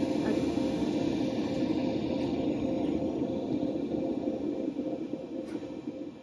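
Steady mechanical hum with a faint whine from a heated deli food display case, its fan and heater running.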